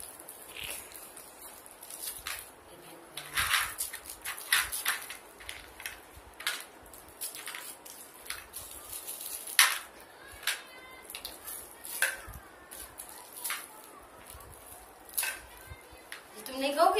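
Toffee wrappers crinkling in short, irregular bursts as they are unwrapped by hand.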